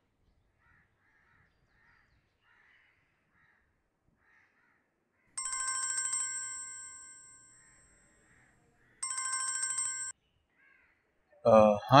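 Mobile phone ringing with a trilling electronic ringtone, in two bursts. The first fades away, and the second stops abruptly after about a second as the call is answered. Faint bird chirps are heard before it.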